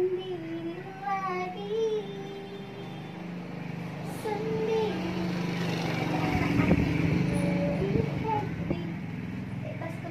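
A passing train rumbles: it swells from a few seconds in, is loudest around seven seconds and fades toward the end. It plays under a song whose singing is heard in the first few seconds.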